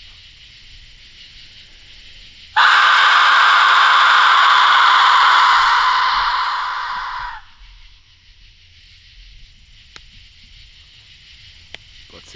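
A whistle described as a native whistle, blown once in a long breathy blast of about five seconds. It starts suddenly, holds steady, then tails off. A faint insect chirr runs underneath.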